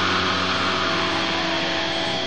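Heavy metal song, instrumental passage: a dense, steady wall of distorted guitar with a few held notes running through it.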